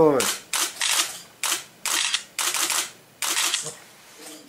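Camera shutters clicking, about ten sharp clicks in an irregular run, as a posed group photo is taken.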